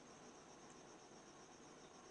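Near silence: faint, steady, high-pitched background hiss.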